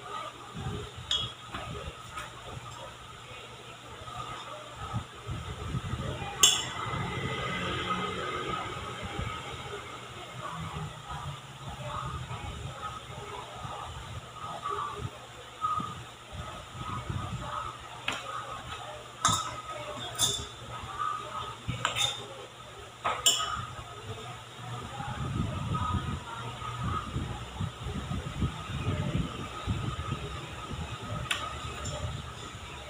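A metal spoon clinking sharply against a stainless steel mixing bowl a handful of times, the loudest strike about six seconds in and several more in a cluster later, with soft handling noise in between as cookie dough is scooped and rolled by hand.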